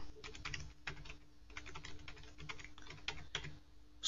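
Computer keyboard being typed on: a quick, irregular run of faint key clicks.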